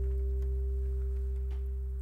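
Closing chord of a nylon-string acoustic guitar ringing on and slowly dying away.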